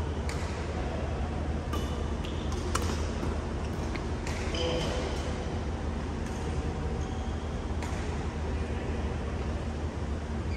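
Court shoes squeaking in short chirps on a badminton court floor, with a few sharp clicks in the first few seconds, over a steady low hum.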